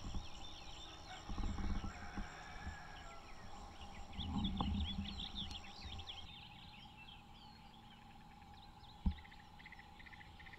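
Birds calling in a dense run of short chirps over a steady insect drone, with low thumps of footsteps on wooden steps a little over a second in and again around four to five seconds in, and a single sharp knock near the end.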